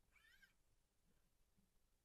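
Near silence: room tone, with a very faint, short, high-pitched sound that wavers in pitch just after the start.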